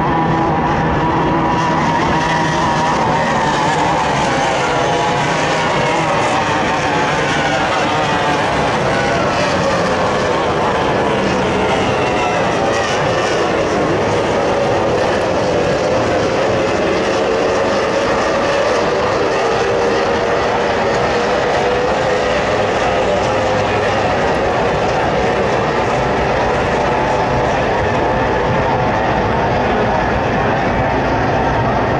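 Outboard engines of several racing powerboats running flat out at high revs, their pitch falling through the middle as they pass by and then holding and rising a little as they power on.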